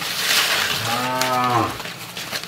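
A cow lowing once: a breathy start that turns into a single low, steady moo about a second long.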